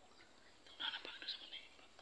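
A person whispering briefly, about a second long, near the middle.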